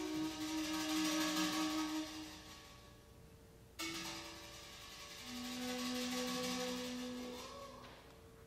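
Flute and double second steel pan duet. Ringing steel pan chords die away, with a fresh one struck sharply about four seconds in, under long held low flute notes.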